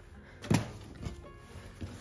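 A dull thump about half a second in, with a smaller knock about a second in: hands pressing and laying fabric panels down flat on a cutting mat.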